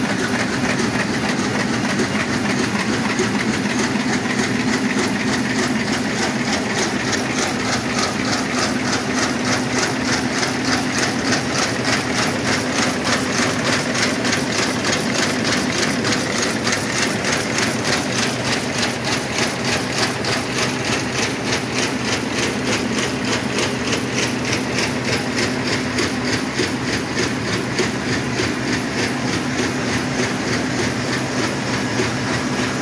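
Bluecrest Rival mail inserter running at production speed: a steady mechanical hum with a rapid, even clacking from its feeders, gripper arms and transport.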